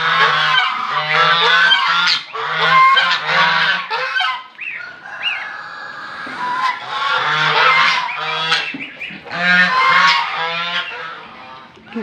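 A flock of domestic geese honking loudly, many repeated calls overlapping, with a short lull about four seconds in before the honking picks up again.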